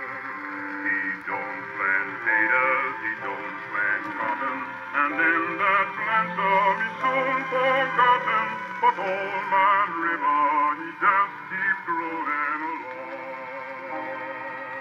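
A 78 rpm shellac record played acoustically on an HMV Model 460 table gramophone through its pleated Lumière diaphragm: a male singer with a wide vibrato over an orchestra. The sound has no deep bass and little treble.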